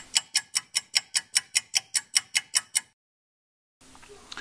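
Ticking clock sound effect, about five sharp, even ticks a second for roughly three seconds before it cuts off, counting down thinking time for a quiz question.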